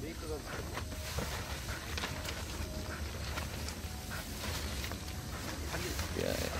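Nylon fabric of a Kovea pop-up changing tent rustling and crinkling in scattered short bursts as it is handled on the ground to be folded, over a steady low wind rumble on the microphone.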